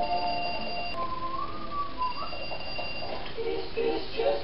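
High, steady electronic tones like an alarm sounding, broken about a second in by a wavering, whistle-like tone that rises and falls. Then the steady tones return, and voices come in near the end.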